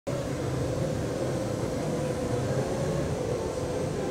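UVify Draco-4x4, a large multi-rotor racing drone, hovering with a steady propeller hum that holds one pitch.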